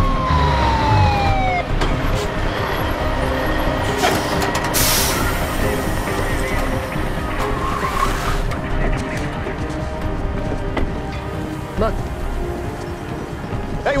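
A fire engine's siren winding down, its pitch falling steadily and dying out about a second and a half in, over a low rumble and a steady underscore of tense music. Two loud bursts of hiss come about four and eight seconds in.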